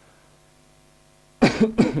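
A man coughing twice in quick succession near the end.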